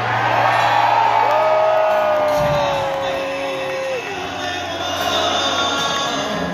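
Concert audience cheering over live acoustic guitar music, with one long held whoop from a fan about a second in.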